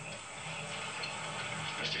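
Steady low hiss and faint hum from a television's soundtrack, with no clear event in it.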